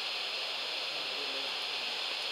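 Steady background hiss in a pause between countdown-net announcements.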